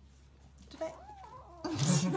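Kitten meowing: a short wavering meow about a second in, then a louder, harsher cry near the end.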